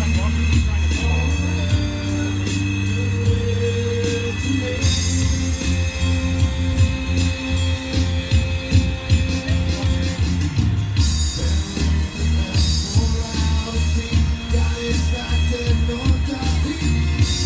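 A live band playing a song through amplifiers: strummed acoustic guitar, electric guitar, bass guitar and an electronic drum kit keeping a steady beat. The drums become busier about five seconds in.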